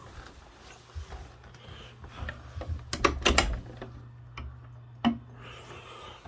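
Plastic tie hanger and clothes hangers being handled in a closet: a quick cluster of sharp clicks and clacks about three seconds in and one more click just after five seconds, with light rubbing and a faint low steady hum underneath.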